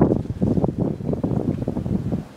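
Wind blowing across the microphone: an uneven, gusting low rumble.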